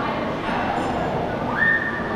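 A single high whistled note, sliding up quickly and then held for about half a second near the end, over the murmur of a crowd in a large hall.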